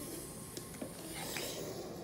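Faint rustling with a few soft taps as a powdered baking ingredient is shaken from its container and handled.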